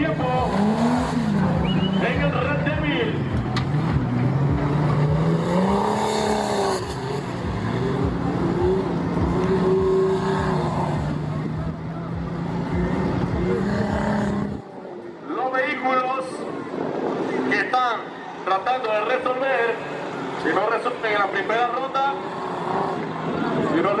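Off-road Jeep engine revving hard and unevenly as it drives through a mud course, its pitch rising and falling repeatedly. The engine sound cuts off abruptly about two-thirds of the way through, leaving voices over a fainter steady engine.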